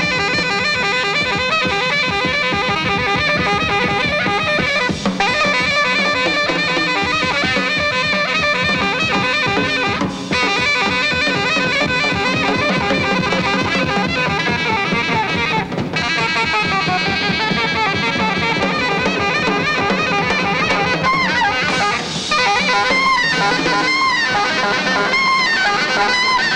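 Free jazz played live and loud: alto saxophone lines over busy drum kit and bass. Near the end the saxophone wails in wide swoops up and down in pitch.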